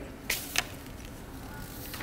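Paper handling: two quick rustling swishes of printed sheets about half a second in, then quiet room tone.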